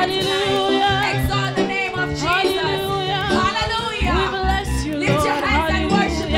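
Live gospel praise-and-worship singing: voices drawing out sliding, wavering vocal runs over keyboard accompaniment, with the bass getting heavier about four seconds in.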